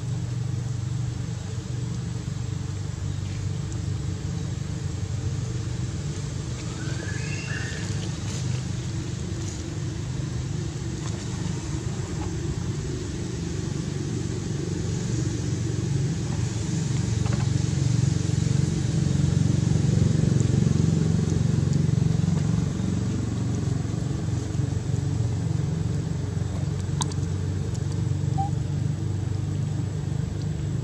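A steady low engine hum, like a motor vehicle running nearby, growing louder past the middle and easing off again. A brief high squeak about seven seconds in.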